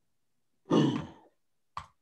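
A person sighs into the microphone over a video call, a single breathy sigh of about half a second that fades out, followed by a short sharp click near the end.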